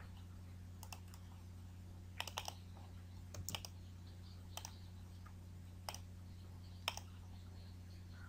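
Faint computer keyboard keystrokes and mouse clicks at irregular intervals, a few bunched together about two to three and a half seconds in, over a steady low electrical hum.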